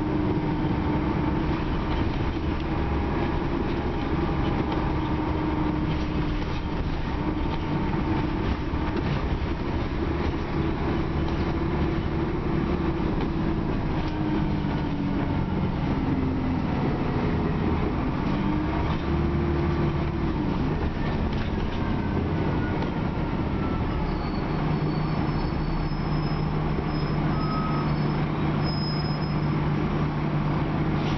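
Dennis Trident double-decker bus heard from inside the lower deck while running: steady engine and road rumble with a drivetrain whine that falls and rises in pitch as the bus changes speed, settling into a steady low hum in the last few seconds.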